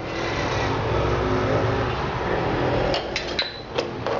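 A steady rushing hum, then from about three seconds in a few sharp clicks and scrapes of a steel ladle against the aluminium pot as stirring of the curry begins.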